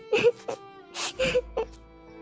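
A voice whimpering in a few short, breathy bursts over steady background music.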